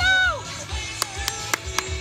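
A loud, high call of encouragement to a barrel-racing horse at the start, rising then falling in pitch. Then background music with sharp clicks about four times a second.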